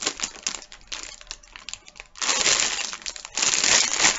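Plastic candy bag crinkling as it is handled and turned over: scattered crackles at first, then two longer spells of rustling, one about two seconds in and one near the end.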